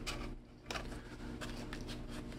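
Faint handling sounds of a corrugated-cardboard model being pressed and shifted by hand: light rustling and scraping, with one soft click a little under a second in.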